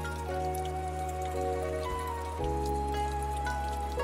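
Slow background music with long held notes and a low bass, over the steady splash and patter of stream water falling over rocks.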